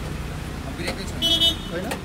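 A vehicle horn gives one short toot a little over a second in, over a steady low engine hum from the road.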